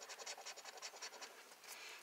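A coin scratching the coating off a scratch-off lottery ticket: faint, quick, even strokes, about ten a second, that stop about a second and a half in.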